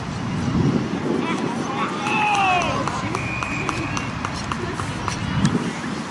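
Australian rules footballers shouting calls to each other across the field, one loud call about two seconds in, over a rough low rumble. Near the middle a brief steady high tone sounds, followed by a run of light, evenly spaced ticks.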